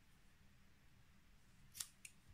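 Near silence, then a single short snip near the end: scissors cutting the yarn after the last stitch is pulled through.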